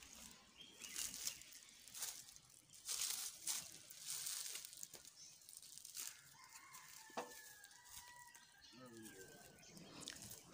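Faint outdoor ambience with short, irregular rustling bursts. In the second half, faint drawn-out distant calls are heard.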